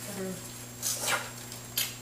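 Short rustling, scraping handling noises from hands and utensils at the kitchen counter, two of them about a second apart, after a brief voice at the start, over a steady low hum.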